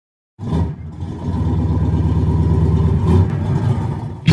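Car engine running: it comes in abruptly just after the start, dips briefly, grows louder about a second in, then runs steadily.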